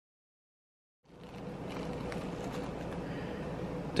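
Dead silence for about a second, then steady indoor room tone: an even background hiss with a faint steady hum.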